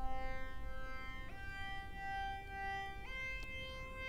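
Synth lead software instrument playing long sustained notes, stepping up in pitch twice, about a second in and again near three seconds, heard through a Channel EQ set to a 'Grand Piano' preset.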